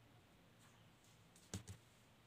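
Near silence: room tone, with two faint clicks close together about one and a half seconds in.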